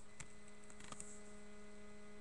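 Steady electrical hum made of several fixed tones, with a couple of faint clicks about a fifth of a second in and around one second in as the webcam is moved.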